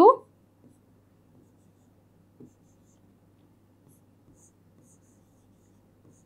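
Faint scratches and light ticks of a stylus writing on the glass of an interactive whiteboard, over a low steady hum.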